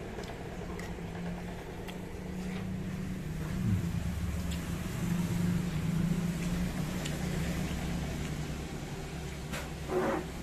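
Motor vehicle traffic on the road: a steady low engine hum with a falling pitch a little under four seconds in, followed by a heavier low rumble.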